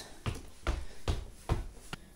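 Footsteps climbing a flight of stairs: about five heavy thuds at an even pace, roughly two and a half steps a second.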